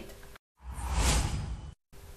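A whoosh transition sound effect between news segments: a rush of noise that swells and fades over about a second, with a moment of dead silence just before and after it.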